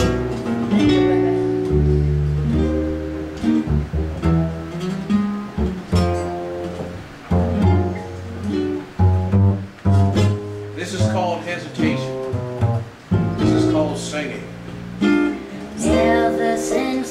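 Acoustic string band of upright double bass, acoustic guitar and banjo playing an instrumental introduction in an old-time blues style, with plucked chords over a walking bass.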